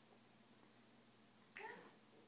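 Near silence: room tone, broken near the end by one short vocal sound from a toddler lasting about a third of a second.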